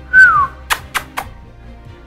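A short, loud whistle that glides down in pitch, followed by three sharp clicks about a quarter second apart, over background music.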